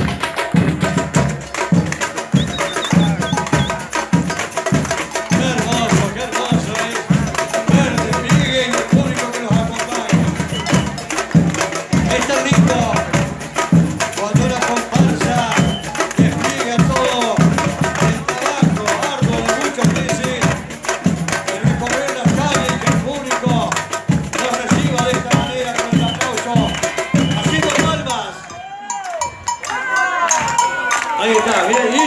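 Carnival percussion band (batucada) marching and playing a steady, driving rhythm on drums and hand percussion, with crowd voices mixed in. The music drops away briefly near the end.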